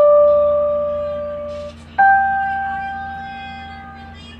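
Electronic keyboard played slowly: two single held notes, the second higher, struck about two seconds apart, each fading away. A steady low hum lies underneath.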